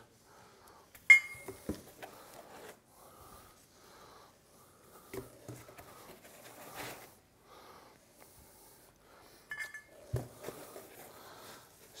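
Small stepper motors with pulleys fitted being handled and set down one after another, with faint rustling of packaging. A sharp metallic clink with a short ring comes about a second in, followed by soft knocks, another ringing clink just before ten seconds and a dull thump right after it.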